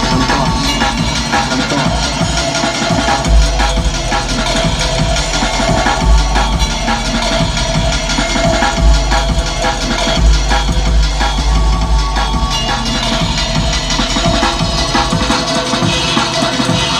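Electronic dance music mixed on a DJ controller, with a heavy, recurring bass.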